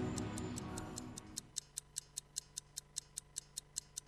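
Ident music fading out over the first second and a half, leaving a quick, even clock-tick sound effect, about five ticks a second, over a faint low hum.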